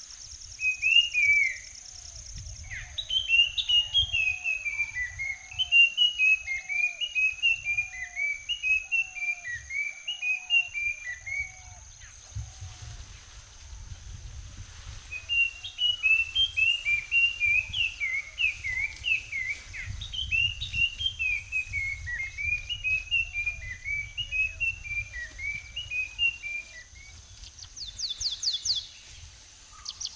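A bird singing in two long runs of quick, down-slurred whistled notes, each run lasting about ten seconds, with a short pause between them. Under it run a steady high whine and a low, uneven rumble.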